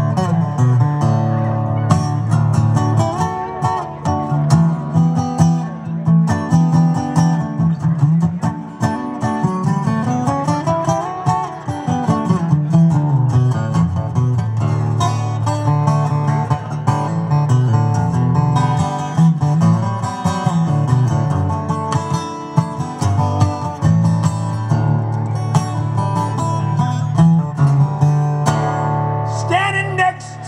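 Acoustic guitar played live through a PA, strummed and picked as an instrumental break between sung verses, with a note that bends up and back down about ten seconds in.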